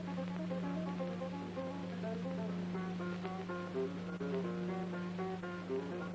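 Guitar music from an old film soundtrack: a quick run of plucked notes, with a steady low hum underneath.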